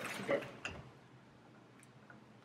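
Two spoken words, then a single short click, faint, about two-thirds of a second in, as crackers are taken out of a cardboard cracker box.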